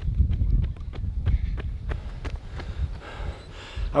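A runner's shoes striking an asphalt road at a quick, even stride, about three to four footfalls a second, under a steady low rumble of wind on the microphone.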